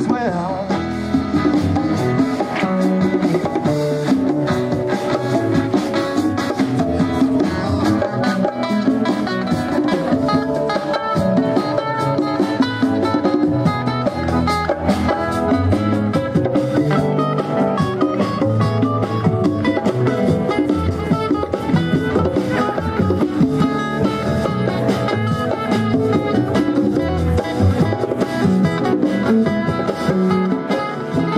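A live rock band playing an instrumental passage with no singing: strummed acoustic guitar, electric guitar and bass over a steady drum-kit beat.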